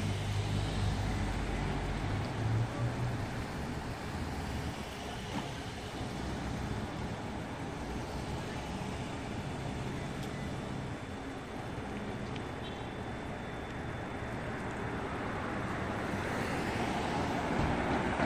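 Car traffic on a town street: a car passes at the start with a low rumble, a steady traffic hum follows, and another car is heard approaching near the end.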